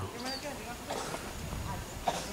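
Quiet outdoor ambience: faint distant voices and a few light knocks, like stones shifting underfoot on a rocky streambed, over a low wind rumble.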